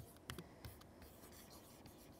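Faint, light scratches and taps of a stylus writing on a pen tablet: a handful of short strokes over near-silent room tone.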